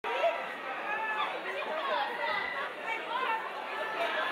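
Many voices talking over one another in a hall: steady crowd chatter with no single voice standing out.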